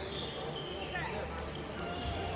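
Table tennis balls clicking off bats and tables in a large, echoing sports hall, with a couple of sharp clicks in the second half, over a murmur of distant voices.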